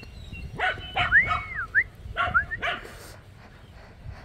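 A dog barking, about four short barks over two seconds. Between the barks there is a high, clear call that rises and falls.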